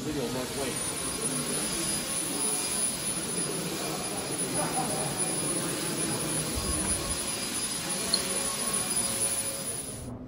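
Steady rushing noise with a thin, high, steady whine, under faint indistinct voices.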